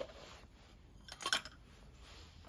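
Ice cubes clattering against a metal ice scoop as ice is scooped up: a short run of quick clicks a little over a second in.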